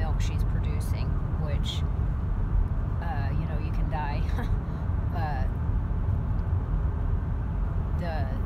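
Steady low rumble of a car's engine and road noise heard inside the cabin, with a few spoken words between about three and five and a half seconds in.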